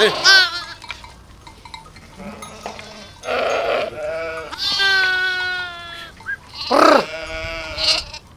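A flock of sheep and lambs bleating. There is a short quavering bleat at the start, a long drawn-out bleat about five seconds in, and another quavering bleat near seven seconds.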